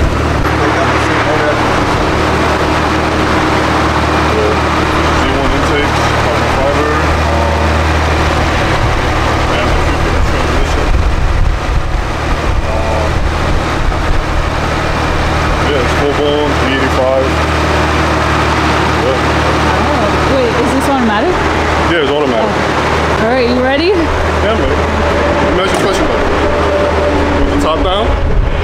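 Infiniti G37's modified 3.7-litre V6 (headers, downpipes, aftermarket exhaust) idling steadily, with people talking over it.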